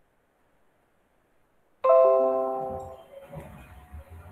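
Near silence, then about two seconds in a single short marimba-like computer notification chime that rings out over about a second, sounding as the laptop comes back online over a phone's mobile hotspot after a Wi-Fi dropout.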